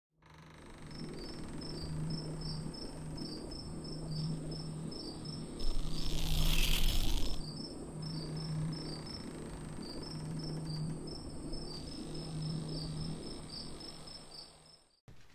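Crickets chirping in a steady rhythm over a low hum that swells and fades about every second and a half. About six seconds in, a loud whooshing rush of noise rises over them for a second and a half, then cuts off.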